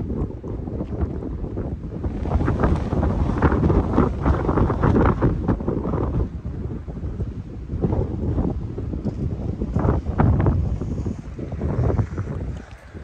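Wind buffeting the phone's microphone in uneven gusts, a rumbling, rushing noise that rises and falls.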